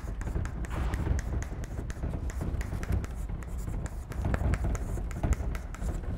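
Chalk writing on a blackboard: a quick, uneven run of short taps and scrapes as block capital letters are chalked out.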